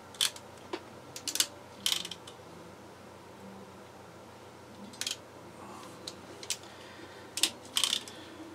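Anderson Powerpole crimp tool clicking as it crimps a contact onto stranded radial wire. There is a quick run of sharp metallic clicks in the first two seconds, then a few single clicks later on.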